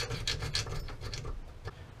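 Round file rasping in quick short strokes against the edge of a shotgun receiver's loading port, taking the sharp edge off a freshly filed bevel. The strokes thin out and fade near the end.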